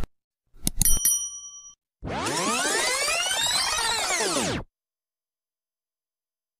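Subscribe-button animation sound effects: sharp mouse clicks, then a click on the notification bell with a bright bell ding ringing for under a second. About two seconds in comes a sound effect of many tones sweeping up and then back down, lasting about two and a half seconds and cutting off.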